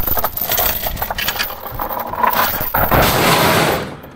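A steel chain rattling and clanking against wooden boards and a metal sprocket as it is pulled by hand. The clatter is irregular throughout, with a heavier stretch of scraping rattle in the last second.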